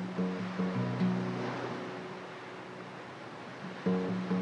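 Background music: a short phrase of a few low notes, heard near the start and again near the end, over the steady wash of small waves running over pebbles in shallow water.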